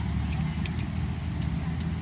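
A few faint clicks of a plastic Transformers action figure's joints being twisted and pressed into place by hand, over a steady low background rumble.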